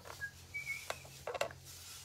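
A few short, high chirps from a small bird, with a couple of sharp clicks about a second in.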